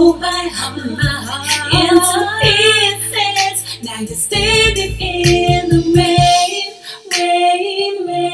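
A slow song playing back from the mix: a female lead vocal with layered harmonies, over sustained low bass notes and recurring sharp percussion hits.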